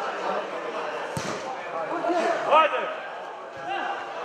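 Voices calling and shouting in a large, echoing hall, with one sharp thud of a football being kicked about a second in.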